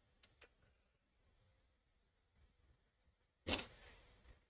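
Near silence, with two faint clicks in the first half second and one short, sharp burst of breath noise, like a sniff, about three and a half seconds in.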